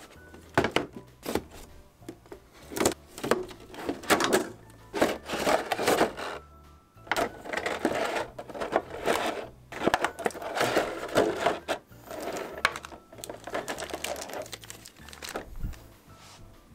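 Figure-box unpacking: crisp clear plastic blister packaging and plastic wrap crinkling and rustling in irregular bursts as they are handled and pulled apart, over background music.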